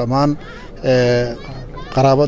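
A man's voice chanting in long, held tones, two drawn-out phrases with short pauses between them.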